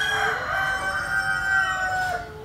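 Rooster crowing: the long drawn-out part of one crow, held on a steady note and tailing off near the end.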